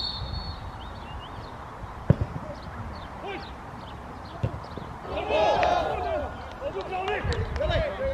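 A short referee's whistle at the start, then a football struck once with a sharp thud about two seconds in. Players' shouts follow a few seconds later, over low wind rumble on the microphone.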